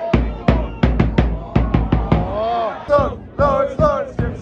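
A supporters' drum beaten in a quick, uneven rhythm, with a football crowd chanting along.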